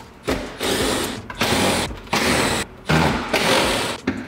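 Cordless impact driver running in about five short bursts, backing out the T25 bolts under a car's front bumper.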